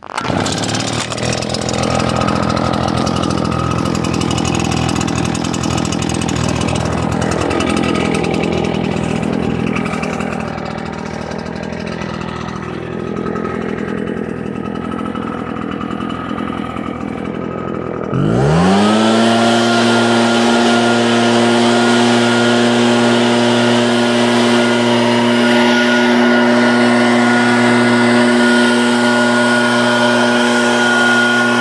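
Gas-powered backpack leaf blower engine that starts up right at the beginning and runs at low, uneven speed. About 18 seconds in it revs up sharply and holds a steady, loud full-throttle pitch.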